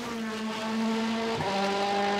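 Race car engine running at steady high revs, its pitch dropping a step about one and a half seconds in.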